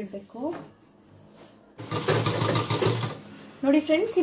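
Sewing machine running in one short burst of about a second, stitching a seam through cotton-like dress fabric, starting a little before the middle and stopping suddenly.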